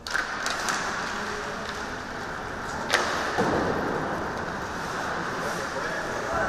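Ice hockey play at close range: skates scraping on the ice and sticks clacking around a faceoff, with a few sharp clicks near the start and one loud crack of stick on puck about three seconds in.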